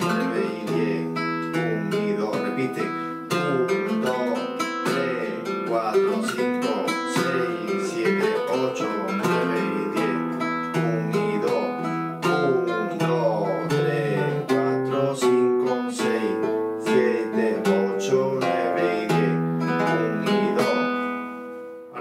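Flamenco guitar playing a soleá falseta: quick plucked single notes and arpeggios over ringing bass notes, the phrase dying away near the end.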